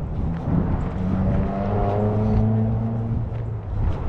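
A motor vehicle's engine hum swells and fades as it passes, its pitch falling slightly.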